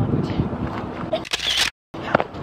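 Handheld camera rustle and wind on the microphone: a low rumbling noise, then a short, loud scrape of handling noise that cuts off suddenly.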